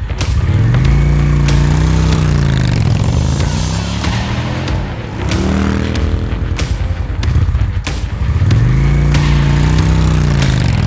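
Motorcycle engine revving, its pitch climbing, holding and dropping away in several swells, as if pulling through the gears and easing off.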